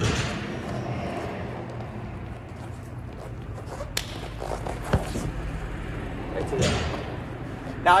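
Two wrestlers moving on a foam wrestling mat, with shoes scuffing and bodies shifting. There are two sharp slaps about a second apart midway, heard over a steady low hum in the hall.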